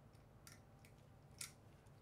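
Near silence, broken by two faint small clicks as a filament pin is pushed into a 3D printer's touch-sensor probe, the second click a little louder.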